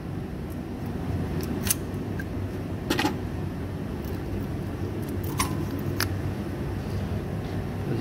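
A handful of short metallic clicks and clinks as brake pads are worked out of a disc brake caliper, the sharpest about three seconds in. A steady low rumble runs underneath.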